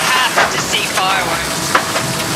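Wind and water rushing past an AC75 foiling racing yacht under sail, a dense steady hiss on the onboard microphone, with brief snatches of voices.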